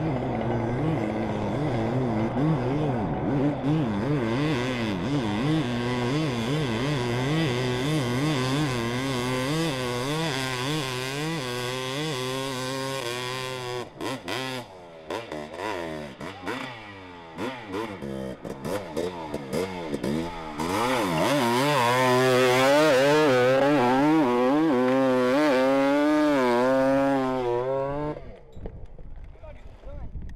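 Hillclimb dirt bike engine revving hard up a steep slope, its pitch rising and falling with the throttle. About halfway through it breaks up and stutters with short gaps, then revs loudly and steadily again for several seconds and cuts off suddenly near the end.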